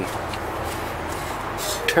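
Steady outdoor background noise in a pause between spoken words.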